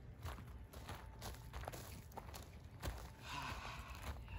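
Footsteps on wood-chip mulch: a handful of uneven steps.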